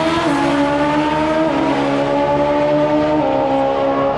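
Top Fuel drag motorcycle engine at full throttle during a pass, running away down the strip. Its loud, steady note steps down in pitch a few times.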